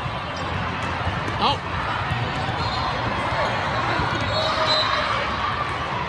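Busy, echoing din of a large hall with several volleyball games going on at once: overlapping voices and crowd chatter with scattered ball hits. A brief, louder, high-pitched sound stands out about one and a half seconds in.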